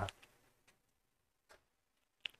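A short pause after the end of a spoken word: very quiet room tone with a few faint, sharp clicks.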